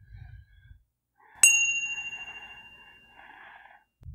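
A chime struck once, about one and a half seconds in, ringing with a bright high tone that fades away over a couple of seconds. It is the single ring marking that five minutes of the breathing session have passed.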